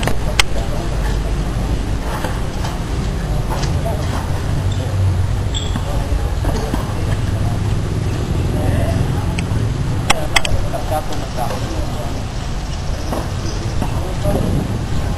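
Tennis ball hit by rackets during a doubles point: a sharp pock from the serve about half a second in, then scattered hits and bounces, with a loud pair close together about ten seconds in. A steady low rumble runs underneath.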